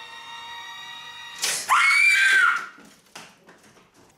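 A woman screams in fright: one loud, high-pitched scream about a second long, starting about one and a half seconds in. Soft music plays before it and stops as the scream begins.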